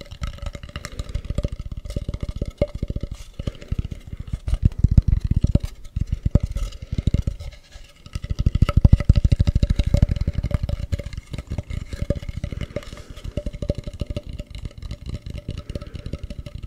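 Fingers scratching rapidly over the textured surface of a carved mask held against a foam-covered microphone, a dense run of strokes with a deep rumble from the contact with the mic. The strokes pause briefly about six and eight seconds in.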